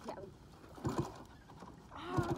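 A small step-through motorcycle being kick-started: two short low thuds close together about a second in, without the engine catching and running.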